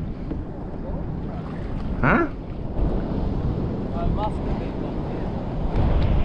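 Wind rumbling on the microphone out on open water, with a short vocal sound about two seconds in and a fainter one near four seconds.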